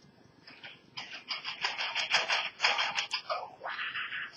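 Music leaking from over-ear headphones as they are put on: thin and tinny with no bass, a quick beat of about four or five hits a second.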